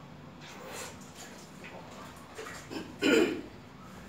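A few faint, soft noises over low room sound, then a short, loud burst of a man's voice about three seconds in.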